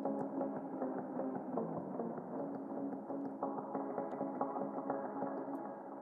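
A sliced synth-and-instrument melody sample in F minor plays in Ableton's Simpler as sustained, overlapping notes. It runs through a low-pass filter and an echo delay, so it sounds soft-topped and washed, with no drums. The Simpler's pitch control is being nudged slightly while it plays.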